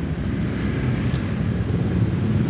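Low, steady rumble of street traffic recorded through a phone's microphone, with a brief faint hiss about halfway through.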